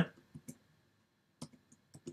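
A handful of faint keystroke clicks on a computer keyboard while code is typed: two close together early, then a few more in the second half.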